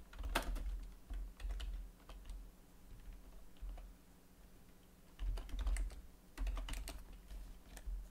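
Typing on a computer keyboard: a burst of keystrokes in the first couple of seconds, a few scattered keys, then another burst from about five seconds in.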